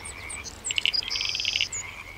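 Frogs calling: rapid pulsed trills and a short buzzing note, with several quick high chirps over them.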